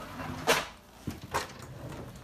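Wooden kitchen drawer pulled open with a sharp clatter about half a second in, then a knock and a second rattle from the utensils inside.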